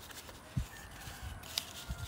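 Hands working potting soil around a fig cutting's roots in a plastic nursery pot: soft rustling and scraping of soil, with two dull thumps, one about half a second in and one near the end.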